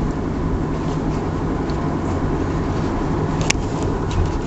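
Steady road and engine noise heard inside a moving car's cabin, a low even rumble and hum. A single sharp click comes near the end.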